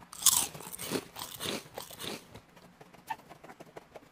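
Scissors cutting through a sheet of cardboard: a run of snips over the first two seconds, the loudest about a quarter second in, then fainter short clicks.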